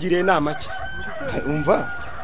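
Rooster crowing.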